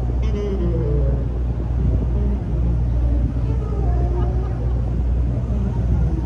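Busy city street ambience: a steady low rumble of traffic with passers-by talking.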